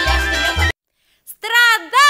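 Belarusian folk band music with a steady low beat and a wavering melody breaks off abruptly at the end of a track. After about half a second of silence, the next track opens with loud, swooping, gliding notes.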